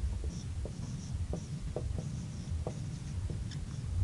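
Handwriting on a board: light, irregular scratching strokes and small taps as a value is written out, over a low room rumble.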